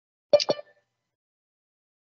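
A short electronic alert chime from the video-call software, two quick strikes with a brief ringing tail, sounding as a new participant joins the meeting.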